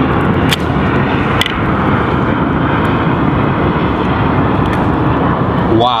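A loud, steady noise, with two sharp clicks in the first second and a half as a rugged plastic waterproof phone case is pried apart by hand.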